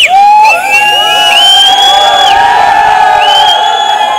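Crowd of fans cheering and screaming loudly, many voices overlapping in long, held, high-pitched cries.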